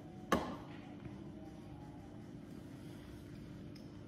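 A plastic cup set down on a wooden table: one sharp knock about a third of a second in, then only a faint steady hum.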